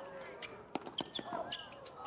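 Tennis ball struck by rackets and bouncing on a hard court in a quick net exchange: about five sharp pops in just over a second, starting near the middle. Short squeaks of court shoes come between the hits.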